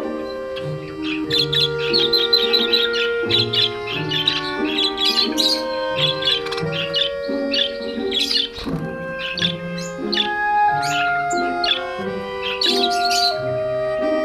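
A flock of budgerigars chattering in runs of quick, high chirps and warbles, over slow instrumental background music with long held notes.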